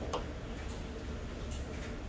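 A couple of light clicks as small plastic cosmetic items are handled on a table, one just after the start and a fainter one about a second and a half in, over a low steady hum.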